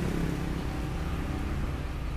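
Komatsu 1.5-tonne forklift engine idling with a steady, even low hum. It runs quietly and smoothly.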